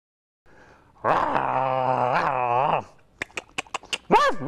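A low drawn-out vocal sound held on one note for about two seconds, dipping briefly near its end, followed by a quick run of about seven sharp clicks.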